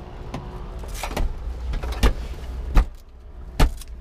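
Metal fittings of a helicopter seat harness clicking and clinking as the belt is fastened: several sharp clicks spaced unevenly, over a steady low rumble.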